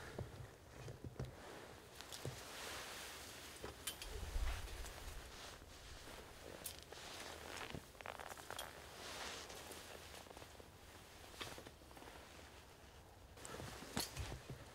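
A person's quiet, scattered footsteps and the rustle of clothing and backpack while moving carefully, with light clicks throughout and a soft low thump about four seconds in.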